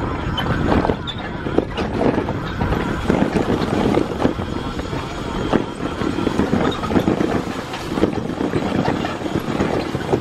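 A rigid electric bicycle with no suspension rattles and clatters over a rough grassy path, with frequent irregular knocks as it bucks over the bumps.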